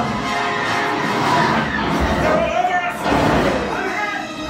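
Theme-park ride soundtrack of a space-battle escape: orchestral music with starship sound effects and low rumbles, voices mixed in.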